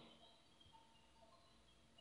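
Near silence: faint room tone, with a few very faint ticks in the first half.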